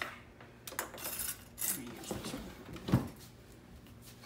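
Small clicks and clinks of a metal tablespoon and a squeezed plastic lemon juice bottle as juice is poured into the spoon, with one sharper click about three seconds in.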